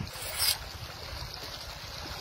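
Shallow river water running, with wind rumbling on the microphone; a brief splash about half a second in as a hand goes into a water-filled hole in the riverbed.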